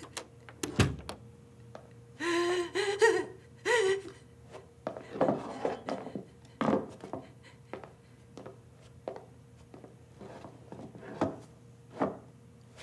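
A dull thump about a second in, then a woman's wordless, wavering cries of distress in two short bursts, followed by softer heavy breathing.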